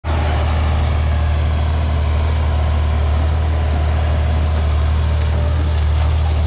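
John Deere 4020 tractor's six-cylinder engine running at a steady, deep drone while pulling a six-row corn planter under load.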